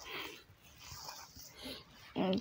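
Faint squishing and rustling of bare hands kneading a damp mix of mustard oil cake, rice bran and flour on a plastic sheet, in three soft strokes.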